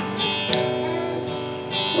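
Cutaway acoustic guitar strummed gently in a slow gospel accompaniment, a few light strokes with the chord left ringing between them.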